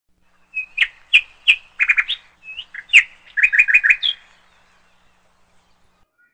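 A bird chirping: single sharp chirps and quick runs of about four notes, stopping a little after four seconds in.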